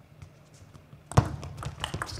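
Table tennis ball being struck by rackets and bouncing on the table at the start of a rally: one sharp click about a second in, then several quicker clicks.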